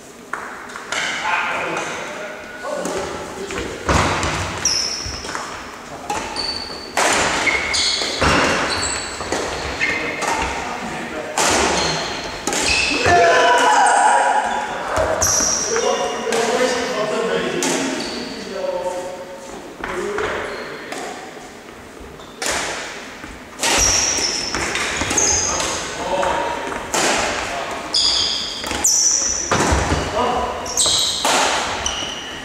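Badminton rackets striking a shuttlecock in a doubles rally: a run of sharp hits that echo in a large sports hall, mixed with short high squeaks of shoes on the wooden court.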